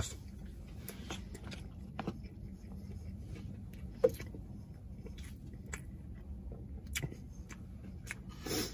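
A person chewing a mouthful of fried chicken with the mouth closed: soft mouth sounds with scattered small clicks, and one sharp click about four seconds in.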